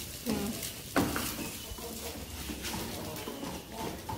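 Rice and chopped tomato frying quietly in a pan over a gas flame, a faint steady sizzle. Two short voice-like sounds come in the first second.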